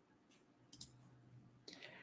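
Near silence: quiet room tone with a few faint clicks, about a second in and again near the end.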